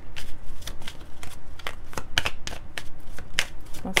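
A tarot deck being shuffled by hand, the cards clicking against each other in a quick, uneven run.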